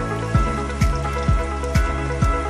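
Background music with a steady beat, about two low drum beats a second under held tones.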